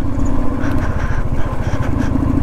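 Royal Enfield Thunderbird 350's single-cylinder engine running steadily as the motorcycle is ridden, a quick even thump of firing strokes.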